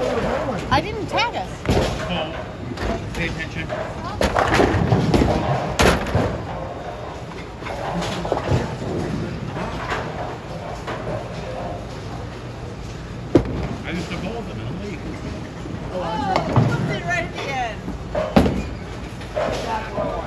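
Bowling alley noise: the low rumble of balls rolling down the lanes and sharp knocks of balls and pins, three standing out about 6, 13 and 18 seconds in, under background voices.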